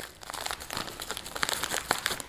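Plastic packaging bag crinkling and crackling in the hands as it is opened and a small product is worked out of it, with irregular sharp crackles throughout.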